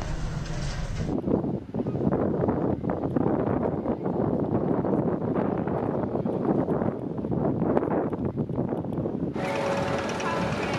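Gerstlauer Infinity Coaster train running along its steel track: a steady rolling rumble with rattle that begins abruptly about a second in and cuts off abruptly near the end.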